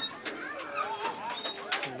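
Children's voices and chatter at a playground, with a few light knocks late on.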